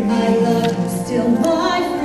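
Live singing from a soul-style stage musical: singers holding long, sustained notes between lyric lines.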